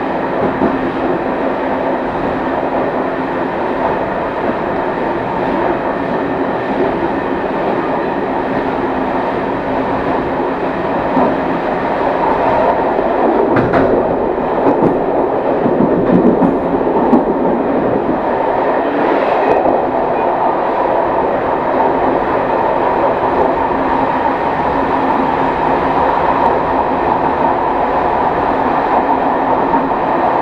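Train running along the line: steady wheel and running noise from the front of the train. About halfway through it grows louder and rougher for a few seconds as the wheels cross a set of points, with a sharp click among it.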